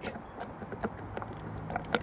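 Engine oil pouring from a plastic bottle into a funnel: a low gurgle with scattered irregular light clicks and patter, and one sharper click near the end.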